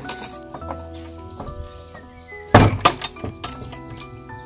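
Background music with sustained tones, over the knock and rattle of an old wooden plank door and its iron chain latch: two heavy thunks, close together, about two and a half seconds in, with a clink.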